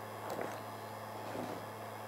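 Steady low hum of a heat gun running on a low setting, with a couple of faint light clicks of small metal clips being handled.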